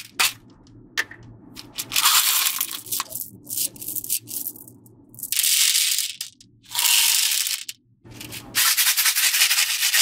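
Small beads poured from a plastic bottle into a plastic tray, rattling and pattering against the tray and the other beads in several pours of about a second each.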